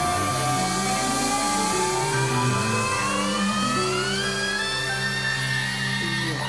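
Live rock band playing, with one long sustained note that slides slowly upward in pitch over a steady bass line and cymbals.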